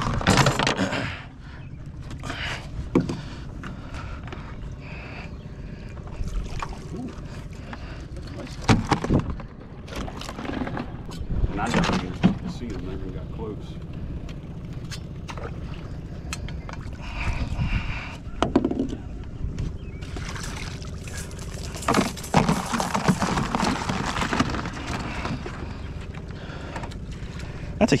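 Crabbing from a small aluminum boat on a trotline: a steady low rumble runs under scattered knocks and clatter as crabs are scooped with a dip net and dropped into a plastic tub.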